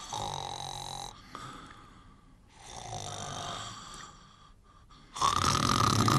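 Cartoon snoring performed by a voice actor: two slow, even snores, then a louder one near the end.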